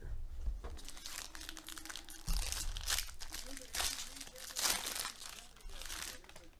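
Foil trading-card pack wrapper being torn open and crumpled by hand, crinkling in a string of bursts, with a couple of dull knocks from handling.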